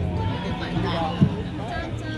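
Voices with some music over an outdoor stage sound system, and one sharp knock a little past halfway.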